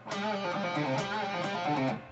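Electric guitar in drop D tuning playing a quick rock riff, with string bends and pull-offs, on a Schecter Diamond Series guitar. The playing stops abruptly at the very end.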